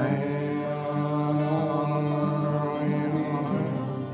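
A male voice singing a sustained, chant-like vocal line over a fingerpicked Martin OM-42 acoustic guitar.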